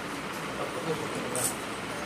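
Steady background hiss with faint, indistinct voices in the distance, and a brief sharp hiss about one and a half seconds in.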